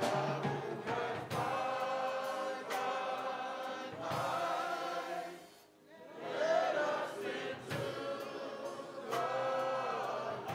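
Men's chorus singing, with a short break between phrases about halfway through.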